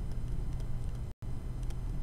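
Steady low hum with faint light taps and scratches of a stylus writing on a tablet screen. The sound drops out completely for an instant just over a second in.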